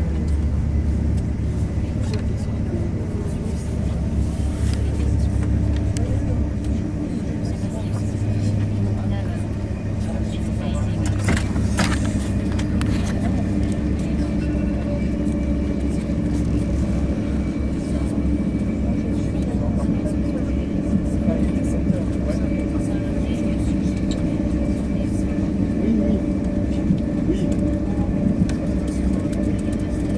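Steady low rumble of a Thalys TGV high-speed train running at speed, heard inside the passenger car, with passengers talking in the background. A short rush of noise comes about twelve seconds in.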